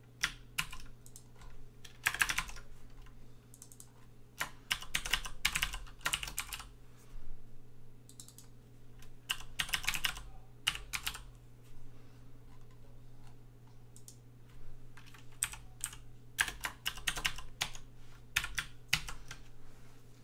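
Typing on a computer keyboard: several bursts of rapid keystrokes with short pauses between them.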